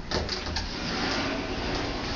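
Built-in wardrobe door being moved: a few short clicks at the start, then a steady scraping, running noise.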